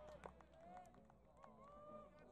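Faint, distant shouting from rugby players and spectators across the pitch, with drawn-out calls and a few scattered sharp clicks.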